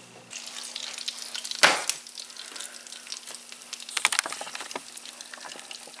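Hot bacon sizzling and crackling in its own grease, with a sharper pop about a second and a half in and a flurry of crackles around four seconds.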